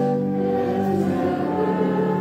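A hymn sung by several voices, holding long, steady notes that change pitch every second or so.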